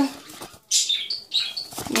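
Paper pages of an instruction booklet rustling and flapping as they are leafed through, in a quick run of short rustles through the second half.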